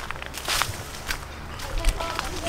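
Footsteps of a person walking along a garden path, a few separate steps with a heavier thump near the end.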